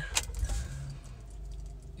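Ignition key turned with the keyring jangling, then the 2010 Honda Pilot's 3.5-litre V6 starts and settles into a low, steady idle, heard from inside the cabin.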